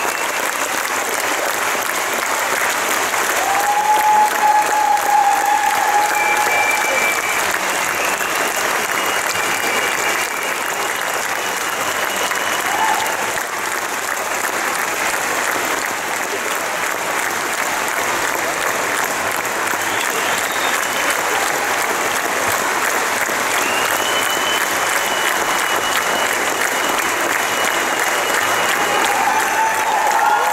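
Audience applauding steadily, an unbroken round of clapping with a few voices calling out over it.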